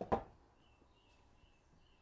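A short knock of a painting board against a wooden easel as it is turned upside down and set back, right at the start. Then it is quiet, with a few faint high chirps.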